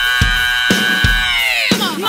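Rock music in which a female singer holds one long high note that slides down and breaks off near the end, over a few widely spaced drum hits.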